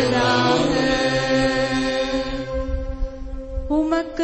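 Slow sung Tamil responsorial psalm with a steady accompaniment, built on long held notes. A new sung phrase begins near the end.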